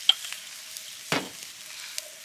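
Mince and sausage frying in a hot pan over a campfire, a steady sizzle, with a sharp click just after the start.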